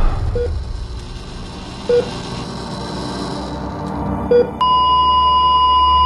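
Patient heart monitor beeping three times, with the gaps between beats growing longer. About four and a half seconds in, the beeps give way to a continuous higher-pitched flatline tone, the alarm signalling that no heartbeat is detected.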